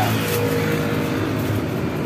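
A motor engine running with a steady low hum and a held tone, easing off about a second and a half in.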